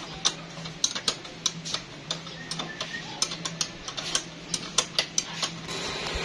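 Hand socket ratchet wrench clicking in quick, irregular runs as a bolt at a scooter's center-stand mount is turned. A faint steady low hum sits underneath.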